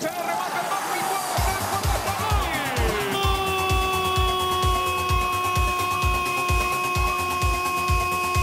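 Background music with a steady, fast drum beat. About three seconds in, a falling sweep leads into long held chord tones over the beat.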